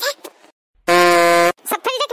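A short, loud, flat horn-like comedy sound effect, held steady for about two-thirds of a second and cutting off sharply, set between lines of cartoon dialogue.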